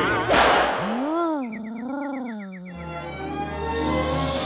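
Cartoon sound effects: a loud whooshing burst near the start, then a long, voice-like howl that rises and falls twice over about two seconds, with a quick run of short, high, rising chirps laid over it. Music takes over near the end.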